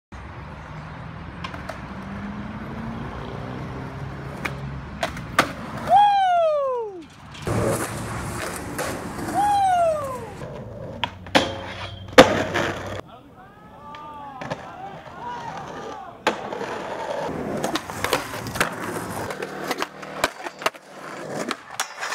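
Skateboard wheels rolling on concrete, broken by sharp pops and hard landings of the board, the loudest a sharp crack about twelve seconds in, along with skateboard tricks on metal handrails.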